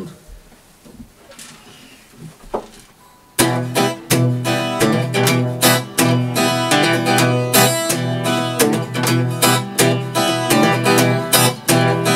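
After about three seconds of quiet, a steel-string acoustic guitar starts up suddenly, strummed in a steady rhythmic chord pattern as the intro of an acoustic song.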